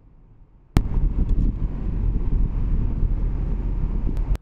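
Loud, steady low rumble of road and wind noise inside a moving Tesla's cabin, cutting in abruptly under a second in.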